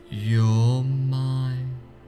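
A man's voice holding one long, low, chant-like tone for nearly two seconds, over soft steady background music.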